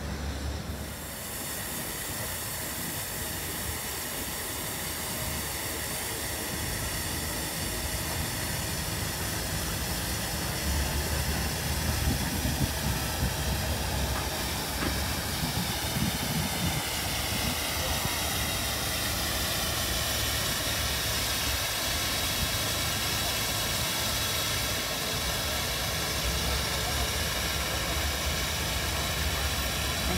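Steady rushing noise of city road traffic, with wind buffeting the microphone in uneven low rumbles that grow stronger after about ten seconds.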